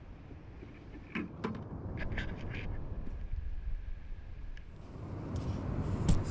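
Outdoor beach ambience: a steady low rumble of wind and surf, with a few short, sharp sounds between about one and two and a half seconds in.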